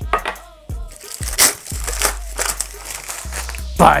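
Crumpled packing paper crinkling and rustling in several short strokes as tin cans are handled, over background music.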